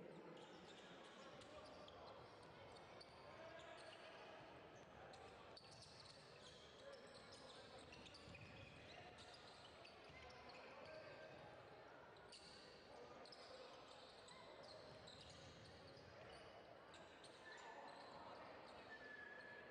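Faint game sound from a basketball court in a large hall: a ball dribbled on the floor with short knocks throughout, mixed with scattered voices of players and spectators.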